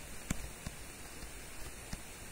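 Faint steady hiss of a quiet recording with a few soft ticks of a stylus on a tablet screen during handwriting.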